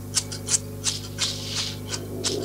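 Cardboard Ravensburger jigsaw puzzle pieces clicking and rustling as fingers sort through loose pieces on a table, about six small clicks over two seconds, over a low steady hum.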